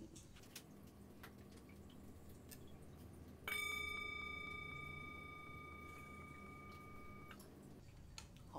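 Metal singing bowl struck once with a wooden striker about three and a half seconds in, ringing with several clear overtones that slowly fade, then cut short about a second before the end. It is struck as a cleansing before a card reading.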